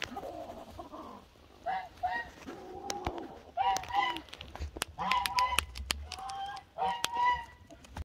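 Muscovy duck giving a series of short calls, with sharp clicks as its bill pecks at a foam Croc clog.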